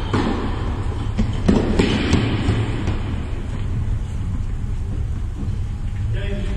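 Steady low rumble of a large indoor tennis hall, with a few sharp knocks of tennis balls bouncing or being struck in the first half.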